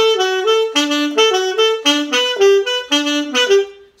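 Alto saxophone playing a quick merengue típico phrase: a run of short, detached notes jumping between a few pitches, stopping just before the end.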